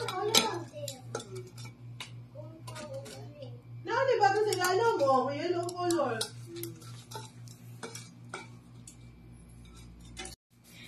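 Stainless-steel kitchen tongs clacking and scraping against a toaster oven's metal tray and a ceramic plate as slices of garlic bread are lifted out and set down: a scattered run of light clicks and clinks, over a low steady hum.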